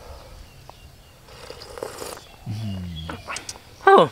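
A man tasting soup from a spoon: a soft sip and light lip smacks, with a short murmured "mm" hum about two and a half seconds in.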